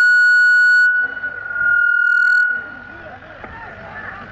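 A loud, steady high-pitched electronic tone holds for nearly three seconds and then stops, leaving faint background voices. A harsher buzzing edge sits on the tone for about the first second and again briefly around two seconds in.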